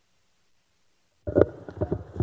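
Brief, muffled voice over the chamber's sound system, cutting in abruptly about a second in after near silence, with a few uneven syllable-like pulses.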